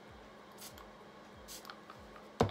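Fix+ setting spray pumped twice onto a makeup brush: two short, faint hisses about a second apart.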